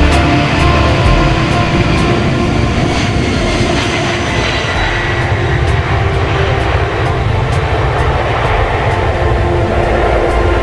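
Jet airliner taking off, its twin engines at takeoff power as it rolls and lifts off, mixed under background music with a steady beat.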